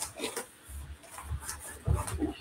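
Soft knocks and rustling from fabric and an embroidery hoop being handled at the embroidery machine, with a sharp click at the start and a louder knock near the end.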